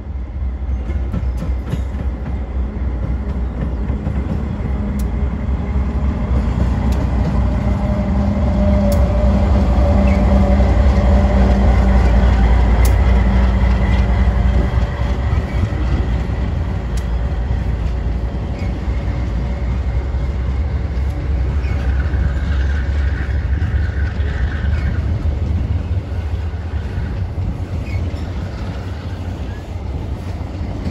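MRS AC44i diesel-electric locomotive passing close, its engine hum and rumble loudest about ten to fourteen seconds in. It is followed by the steady rolling rumble of an empty train of tarp-covered freight wagons going by.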